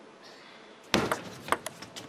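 A table tennis ball being served and played: a quick run of about five sharp clicks of the plastic ball off the bats and the table, starting about a second in, the first the loudest.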